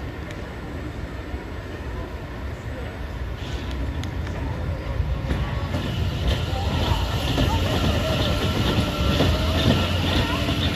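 Steel family roller coaster train running along its track, the wheel rumble and rattle growing louder from about the middle as the train comes near and passes overhead.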